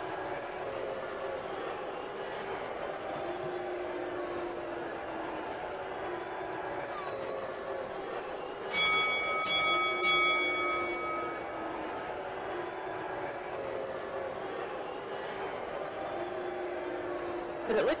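A bell struck three times in quick succession about halfway through, each strike ringing on briefly, over a steady faint background of music.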